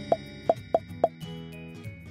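Four quick cartoon pop sound effects in the first second, one after another, as markers appear along a path, over soft background music.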